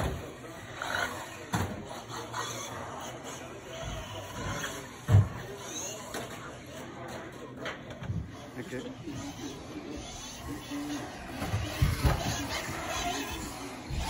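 Electric 4WD 1/10 Team Associated B74.1 off-road buggy running on an indoor carpet track: short rising motor whines and scattered thumps, with a sharp thump about five seconds in the loudest, over faint voices in the hall.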